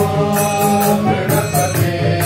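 Devotional bhajan singing: a male voice holding a slow chanted melody into a microphone, over a steady percussion beat.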